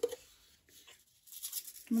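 Near silence in a small room between two spoken words, with faint scattered rustling in the second half.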